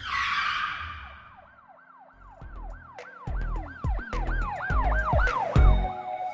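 Channel-logo intro sound effect: a whoosh at the start, then a siren-like tone warbling up and down about three times a second over deep booming hits that grow louder toward the end.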